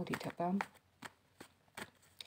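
A short spoken word, then three short, sharp clicks in the second half, tarot cards being handled.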